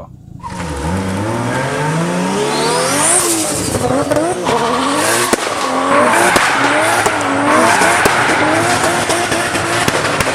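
Performance car engine revving up and down repeatedly, with tyres squealing in a burnout; it starts about half a second in and grows louder partway through.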